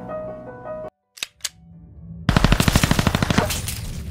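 Intro sound effects: music stops short about a second in, two quick swishes follow, then a loud rapid rattling burst of sharp impacts, like machine-gun fire, lasting about a second as the title card appears, fading into a low continuing rumble.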